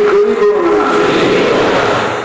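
A man's voice holding one long chanted note in the melodic style of a Bengali sermon, gliding slightly lower near the end.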